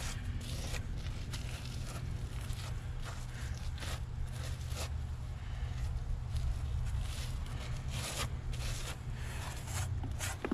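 Gloved hand pressing and smearing hydraulic cement into holes in a concrete wall: irregular soft scraping and rubbing strokes, over a steady low hum.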